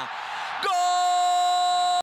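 Stadium crowd noise, then from under a second in a single long, loud, held note at one steady pitch, a football commentator's drawn-out goal shout.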